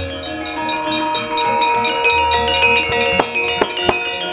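Javanese gamelan playing the accompaniment to a wayang kulit show: bronze metallophones and gongs ring steady overlapping tones over a quick, even pulse. A few sharp knocks come near the end.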